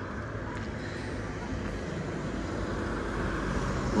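A car driving along the street close by, its engine and tyre noise a steady hum that grows gradually louder as it approaches.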